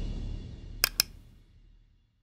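Outro music fading away, with two sharp clicks in quick succession about a second in.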